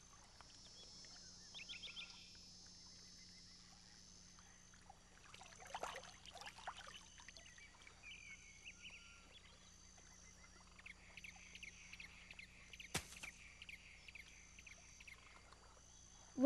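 Near silence: faint outdoor nature ambience with soft, scattered chirps and a single faint click late on.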